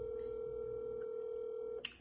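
Telephone ringback tone: one steady ring about two seconds long on an outgoing call, then a sharp click. The call goes unanswered.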